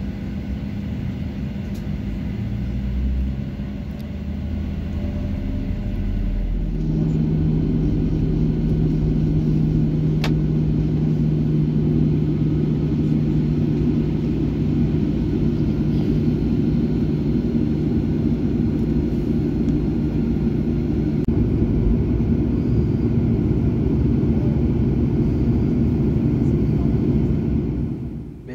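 Boeing 737 jet engines and cabin noise heard from inside the cabin while taxiing: a steady low hum with a held tone, stepping up in loudness about seven seconds in and then holding.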